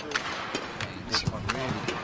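Speech: a male commentator talking over the steady background noise of an indoor sports arena, with a few short clicks.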